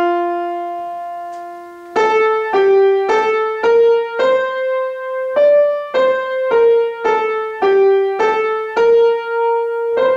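Piano playing a simple single-note melody in F major in 2/4 time, one note at a time. It opens with a long held note lasting about two seconds, then runs on at about two notes a second; this is the melody of a melodic dictation exercise.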